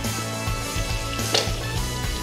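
Background music with steady held tones over a low beat, and one short sharp tap about one and a half seconds in.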